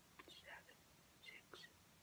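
A boy faintly whispering a countdown, two short whispered counts with small mouth clicks.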